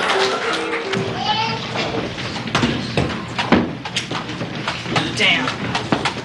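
Music with held notes ends about a second in. It is followed by a hall full of audience voices and laughter, with scattered sharp knocks and thumps in the dark as the stage is reset.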